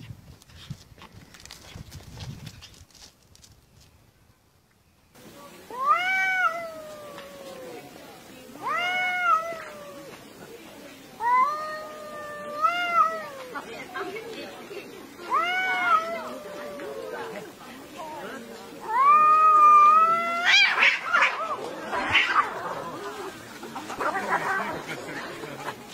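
Two cats yowling at each other in a standoff: a series of long, drawn-out caterwauls, each rising and then falling in pitch. About twenty seconds in they break into a loud, harsh scuffle of screeching.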